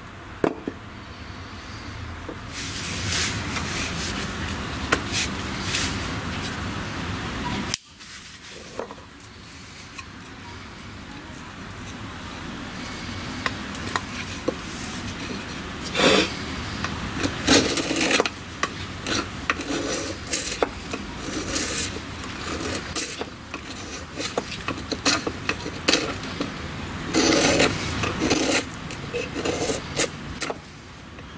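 Blade of a Cold Steel SR1 Lite folding knife carving wood, a run of scraping cuts taking off shavings. There is a sudden break about eight seconds in, and the strokes come louder and more often in the second half as a stick is whittled to a point.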